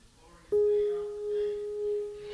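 A church organ holds a single steady note that comes in suddenly about half a second in, with a gently swelling and fading level.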